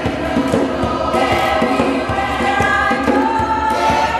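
A group of voices singing a gospel song together in chorus over a steady beat.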